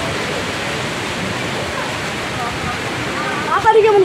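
Steady rushing storm noise of wind and rain. A voice begins near the end.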